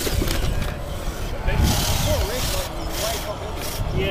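Wind buffeting the microphone in gusts, with onlookers' voices faint in the background.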